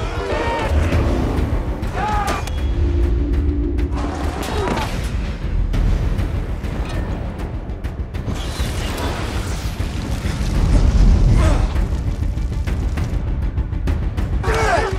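Action-film soundtrack: dramatic score with deep booms running under it. Several brief shouts come from the fighting in the first five seconds, and the mix swells louder about eleven seconds in.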